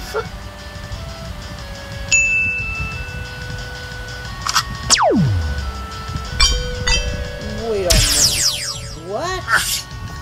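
Cartoon soundtrack: background music of held notes with animated sound effects, a high steady tone about two seconds in, one long steeply falling glide about halfway through, a few chime-like tinkles, and a cluster of falling sweeps near the end. A brief voice-like sound comes just before the end.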